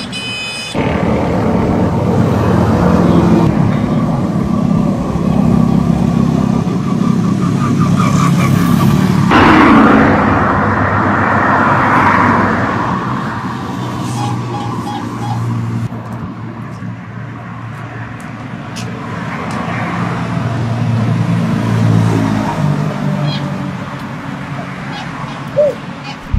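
Road traffic: motor vehicles running past on the road, with a steady low rumble. About nine seconds in, a louder, noisier pass starts suddenly and fades over the next few seconds.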